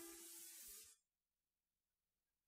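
Faint tape hiss with the last trace of a song's final note playing from a reel-to-reel tape, cutting off to silence about a second in.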